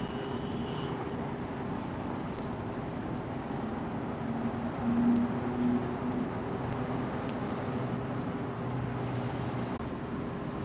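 Road traffic: car engines and tyres running steadily, with one vehicle growing louder and humming about halfway through.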